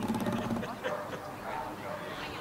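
A dog barking, with people talking in the background.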